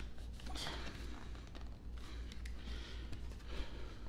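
A tight outer sleeve being forced off a wooden watch box: faint, continuous scraping and rustling of the sleeve against the box, with a few small sharp ticks.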